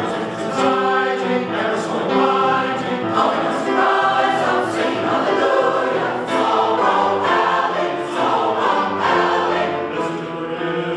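Mixed-voice choir of men and women singing together in parts, holding sustained chords, with the sung consonants coming through crisply.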